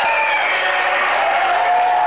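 Audience applauding steadily, with a few faint pitched tones over the clapping.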